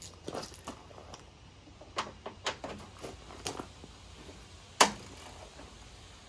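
A socket ratchet with an extension being handled: scattered light clicks and knocks, with one sharp click about five seconds in.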